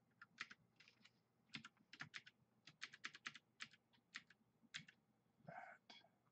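Faint typing on a computer keyboard: irregular clusters of quick keystrokes, with one brief duller sound about five and a half seconds in.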